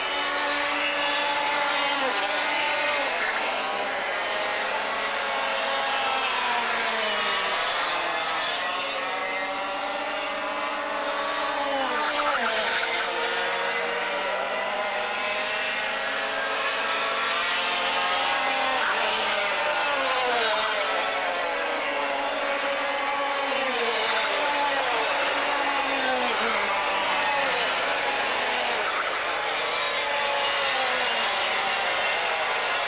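Several Formula TKM 100cc two-stroke kart engines running on track, their notes overlapping and constantly rising and falling as the karts brake into and accelerate out of the corners.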